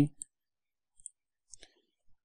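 Faint computer mouse clicks, one about a second in and another about half a second later, with near silence around them.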